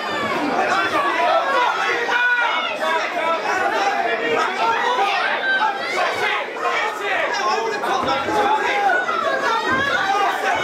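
Boxing crowd shouting and talking over one another, many voices at once, steady throughout.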